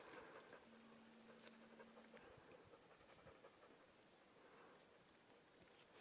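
Near silence: a faint outdoor background with a few faint ticks. About a second in comes a brief faint steady hum from the camcorder's zoom motor.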